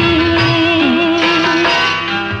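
Indian film song music: a long held melody note over the accompaniment, changing to a new phrase about a second and a half in.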